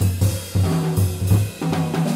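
Live small-group jazz with the drum kit in front: snare hits and cymbals over a run of low upright bass notes.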